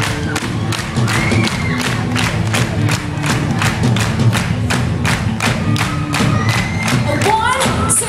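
Loud live pop concert music heard from within the audience: a fast, steady, pounding drum beat over heavy bass and synth lines, with crowd cheering in the mix.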